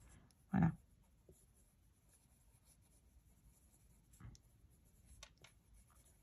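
A coloured pencil scratches softly on paper as it colours in small, even strokes. A few soft clicks come about four and five seconds in.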